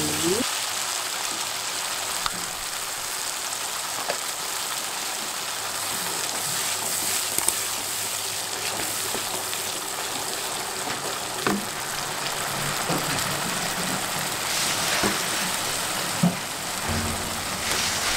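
Blended spice paste frying in oil in a nonstick wok, a steady sizzle, with a few light knocks of the wooden spatula stirring it.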